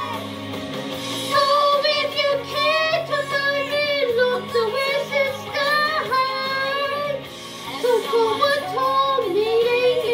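A woman singing a melody over backing music, with held notes that waver in pitch.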